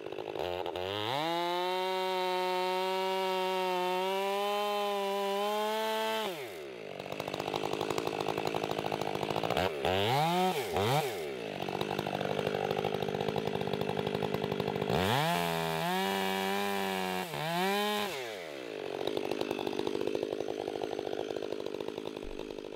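Stihl gas chainsaw cutting through a felled walnut log. The engine revs up to full throttle about a second in and holds steady for about five seconds, drops to idle, then revs in two quick blips. It holds again, revs high for about three seconds, and drops back to idle near the end.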